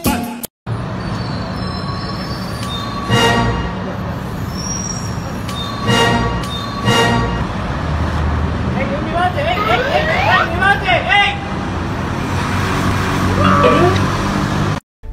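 City street traffic noise, a steady rumble, with short car-horn toots about three, six and seven seconds in and passers-by talking near the middle.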